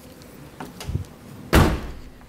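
Rear liftgate of a 2007 Toyota Highlander Hybrid being pulled down with a few light clicks and rustles, then slammed shut once, loudly, about a second and a half in.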